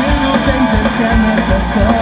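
Pop-punk band playing live and loud: electric guitars, bass and drums with regular drum hits and cymbal crashes.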